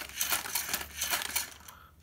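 Remote-control toy combat robot's plastic gears and arms rattling and clicking as it moves and swings a punch. The fast run of small clicks dies away about a second and a half in.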